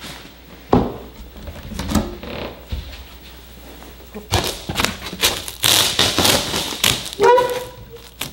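A glass aquarium handled and set onto a polystyrene foam box: a few dull knocks in the first seconds, then a stretch of scraping and rubbing from about halfway as the tank is pressed and shifted into place on the foam to seal it.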